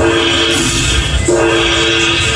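Dragon Link Panda Magic slot machine's bonus sound effects: a long held two-note horn-like chord at the start and again about a second and a quarter in, over the game's music, as bonus prize values are tallied into the win meter.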